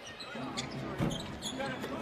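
Basketball bouncing on a hardwood arena court during live play, several separate bounces over a low arena background.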